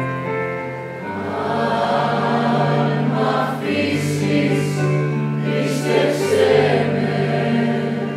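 Mixed group of men and women singing a Greek song together with piano accompaniment, holding long notes; the singing grows fuller about a second in, and the 's' sounds of the words stand out a few times in the middle.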